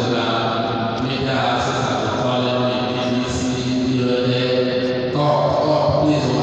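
A man's voice chanting in long, held notes that step from one pitch to the next about once a second.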